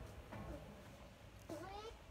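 A faint, short, meow-like call that rises in pitch and wavers, about one and a half seconds in, over a low rumble.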